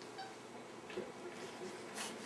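A house cat giving a short, soft meow about a second in, with a faint chirp just before it.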